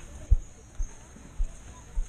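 Footsteps of a person walking on dirt ground, heard as dull low thumps about twice a second, four of them, picked up through a body-worn camera.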